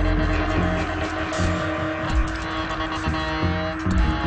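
Live improvised electronic music: a dense layered drone with a pulsing deep bass and sustained steady tones.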